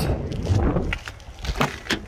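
Wind rumbling on the microphone, then two short clicks near the end as a Subaru Crosstrek's rear passenger door latch is pulled and the door swings open.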